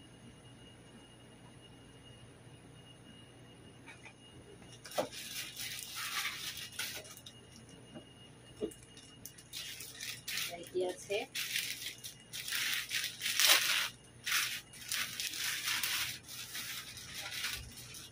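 Plastic packaging crinkling and rustling as a wrapped package is handled and unwrapped, in irregular bursts starting about five seconds in and busiest near the end, with a few light clicks.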